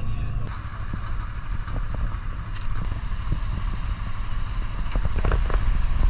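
Underwater sound picked up by a camera in its waterproof housing: a steady low rumble of moving spring water, with a few faint clicks scattered through it.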